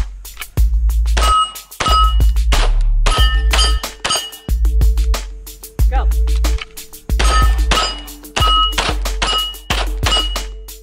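9mm shots from a Canik TP9 SFx pistol striking AR500 steel plates, each hit followed by a short metallic ring, over background music with a steady bass beat.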